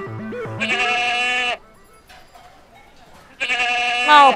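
A goat bleating twice, two long wavering calls about two seconds apart.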